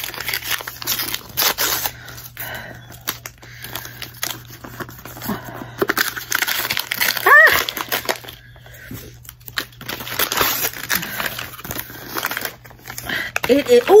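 Paper wrapping being torn and crinkled off a book, in irregular rips and rustles throughout. A brief voice sound comes about seven seconds in.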